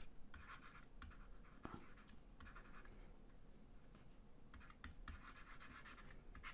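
Faint scratching of a stylus writing on a tablet screen, in short strokes separated by brief pauses, with a quieter stretch in the middle.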